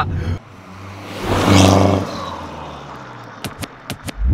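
A car drives past close by: engine and tyre noise build to a peak about a second and a half in, then fade away. A few short sharp clicks come near the end.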